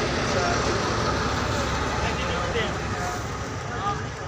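Passenger train rolling slowly along a station platform, a steady rumble with indistinct voices mixed in.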